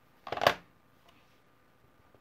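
Brief plastic clatter of a Stampin' Up! ink pad case being handled, about half a second in.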